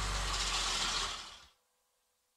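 Cartoon bus engine sound effect: a steady, low, noisy engine sound that fades out about a second and a half in, leaving near silence.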